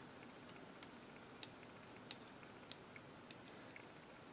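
Near silence with a handful of faint, sharp clicks, the clearest about a second and a half in, from hands handling washi tape on a notebook page.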